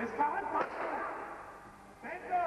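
A voice speaking briefly, with a short sharp crack about half a second in. The sound then fades away toward the end.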